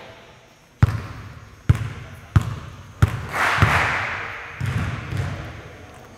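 A basketball being bounced on a hardwood gym floor: several separate bounces, roughly two-thirds of a second apart, each ringing on in the echo of the large hall.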